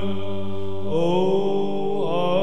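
Byzantine chant in the plagal first mode: a voice sings the melody of the doxastikon over a held drone (ison). About a second in, the lowest drone note stops while the melody goes on after a brief dip.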